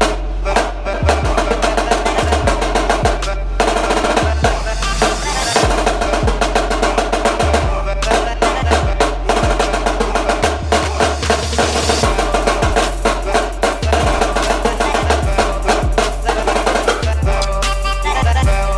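Pearl marching snare drum played with sticks in fast, dense rudimental patterns and rolls, over a loud pre-recorded backing track with a deep bass line.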